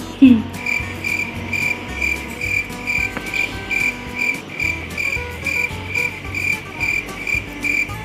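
A cricket chirping steadily, short high chirps at an even pace of about two a second.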